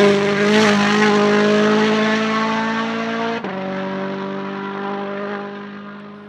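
A Rally1 rally car's turbocharged four-cylinder engine at high revs, holding a steady note as it pulls away. About three and a half seconds in there is a sudden break and the note steps down slightly, then it fades near the end.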